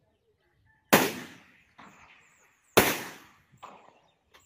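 Two shots from a scoped, bipod-mounted rifle, about two seconds apart, each followed by a short echo, with a fainter noise between them.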